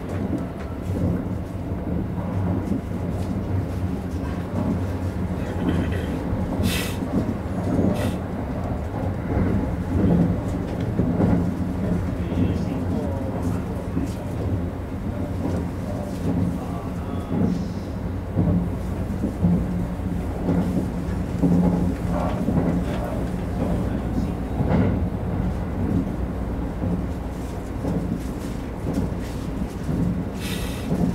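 Kintetsu 50000-series Shimakaze train running at speed, heard from inside the front car: a steady low rumble and hum, with two sharp clacks about seven and eight seconds in.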